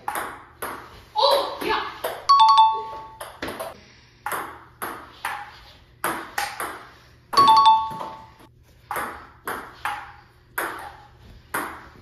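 Table-tennis ball clicking off paddles and a Joola table in a rally, about two hits a second. A short electronic chime sounds twice, each time a point is scored.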